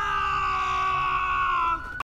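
A man's long, anguished scream, held at one pitch that sinks slightly, cutting off suddenly near the end.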